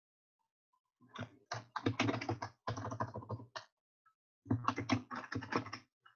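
Typing on a computer keyboard: two quick runs of key presses, the first starting about a second in and the second after a short pause, as a username and password are entered into a login form.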